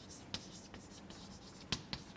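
Chalk writing on a blackboard: a few short, sharp taps and scrapes of the chalk as letters are formed, the loudest near the end.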